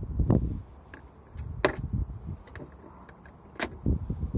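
Scattered knocks, scuffs and sharp clicks from a golden eagle clambering on the rim of a car's open boot and poking inside it. There is a dull thump right at the start, and the two loudest clicks come about a second and a half in and near the end.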